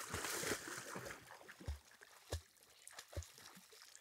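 German shorthaired pointer wading and splashing through shallow pond water, loudest in the first second and then fainter sloshing, with a few short low thumps.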